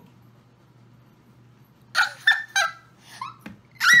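High-pitched laughter: about halfway through, three quick bursts about a third of a second apart, then a louder squealing laugh near the end.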